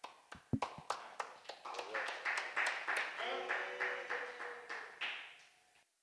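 A small group applauding: a few separate claps at first, then steadier clapping with voices calling out over it, fading away near the end.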